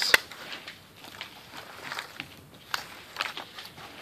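Hands scooping and pushing damp potting mix into a plastic 50-cell seed tray: soft crunching and rustling of the soil with scattered small crackles, and one sharp click near the start.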